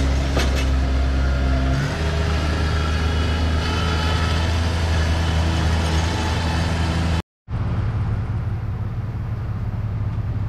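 Bobcat MT100 mini track loader's engine running steadily as the machine drives on concrete, its note shifting lower about two seconds in. The sound cuts out abruptly about seven seconds in, and a lower, steady engine hum follows.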